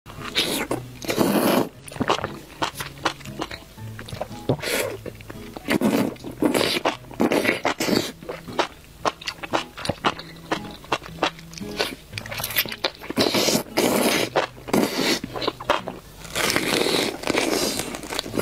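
Background music with low held notes, under repeated loud bursts of slurping and chewing as a person eats strands of enoki mushroom.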